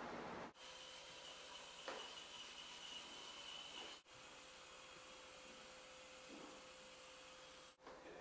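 Near silence: faint steady hiss of room tone, cutting out briefly three times.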